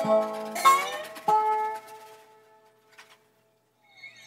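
Three strummed chords on a plucked string instrument, about two-thirds of a second apart, the last one left ringing and fading away over the next second or so.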